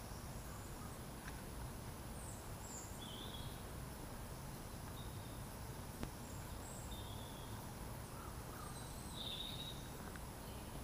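Faint birdsong in woodland: short, high chirps and calls scattered every second or so over a low, steady background rumble, with a single sharp click about six seconds in.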